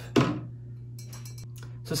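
Faint light clinks of a freshly silver-plated sterling silver piece on its copper holding wire being dipped in a beaker of rinse water, over a steady low hum. A short vocal sound comes just after the start.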